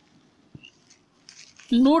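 Quiet room tone with a single faint click about half a second in and soft scattered rustles, then a man's voice starts near the end.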